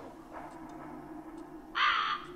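A crow caws once, harshly and briefly, near the end. Under it runs a low steady hum.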